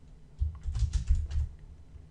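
Typing on a computer keyboard: a quick run of keystrokes that starts about half a second in and stops about a second and a half in.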